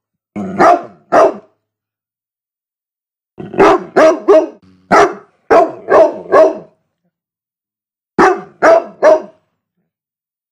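A large dog barking in short, sharp barks grouped in bursts: two barks at the start, a run of about seven a few seconds in, and three more near the end, with dead silence between the groups.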